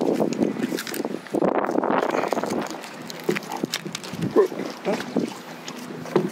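Oyster knife prying and scraping at oyster shells on a rock, with scattered short clicks of blade on shell through the second half.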